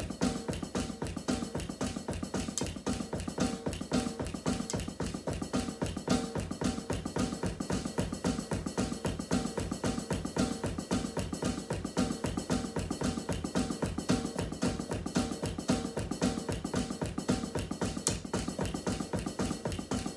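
Drums played with sticks in a fast, steady groove, with several strokes a second and no break.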